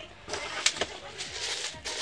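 Cardboard box flaps opened with a few sharp clicks, then a ceramic mug wrapped in bubble wrap pulled out of the box, the plastic wrap crinkling and rustling.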